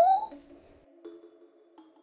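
The rising end of a voiced 'Muu!' call from the Mumu character, cutting off right at the start, then quiet background music of soft, steady held notes.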